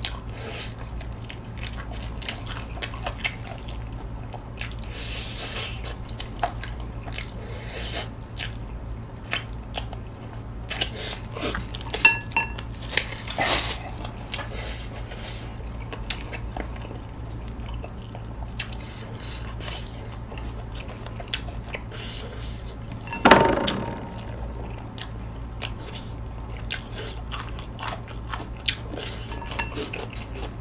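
Close-miked biting and chewing of a sauce-coated chicken drumstick: many small wet mouth clicks, with a couple of louder brief noises about halfway and about two-thirds of the way through.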